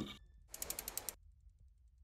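Logo-animation sound effect: a short run of quick, ratchet-like clicks lasting about half a second, a little after the start.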